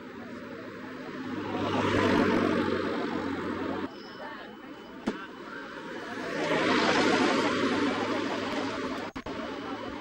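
An engine passes by twice, each time swelling up and fading. The first pass cuts off abruptly about four seconds in.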